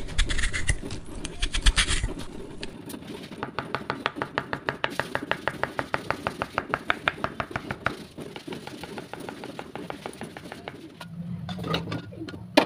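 A small knife scraping the peel off a taro root, then cutting it into cubes on a marble board in quick, even strokes, about five sharp clicks a second as the blade meets the stone.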